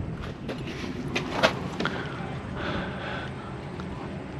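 Low, steady background rumble with a few light, scattered taps or clicks; the sharpest comes about a second and a half in.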